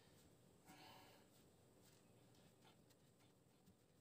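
Near silence, with one faint, brief sound just under a second in.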